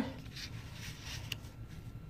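Faint rustle of cardboard being handled: a cardboard cut-out slid and pressed flat against another sheet, with a small tick about a second and a half in.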